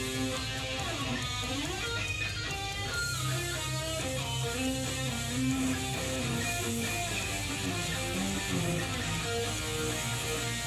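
Amplified Schecter Hellraiser electric guitar with passive pickups playing a lead line of held and bent notes. About a second in the pitch swoops down and back up, over sustained low notes.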